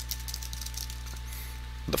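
Faint computer-keyboard keystrokes, a quick run of clicks, over a steady low electrical hum.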